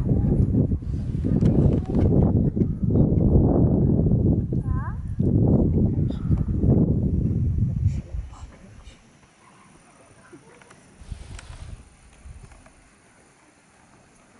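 A large group of children's voices, loud and jumbled, that cuts off abruptly about eight seconds in, leaving only faint outdoor background.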